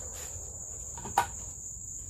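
Insects trilling steadily at a high pitch, with one sharp knock a little over a second in.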